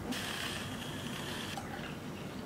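A handheld battery-powered milk frother whirring steadily as it whisks almond milk in a glass, switched off shortly before the end.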